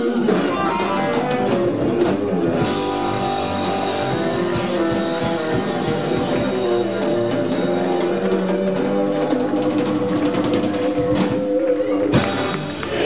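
Live rock-and-roll band playing, with electric guitar and drum kit; the sound gets fuller about two and a half seconds in.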